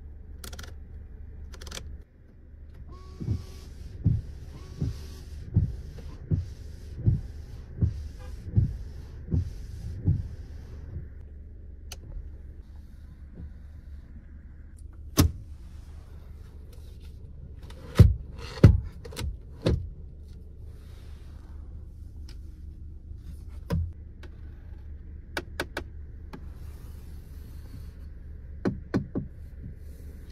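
Windscreen wipers of a Volvo V90 Cross Country, switched on at the stalk, sweeping the glass with a regular thump about every three quarters of a second for several seconds, heard from inside the cabin. After that come scattered sharp clicks and knocks from cabin controls being handled, the loudest pair about two thirds of the way through.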